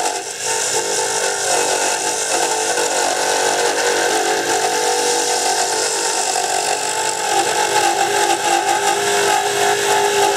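Wood lathe running steadily while a hand-held turning tool cuts a hardwood dart barrel: a constant motor whine with the hiss of the tool shaving the spinning wood.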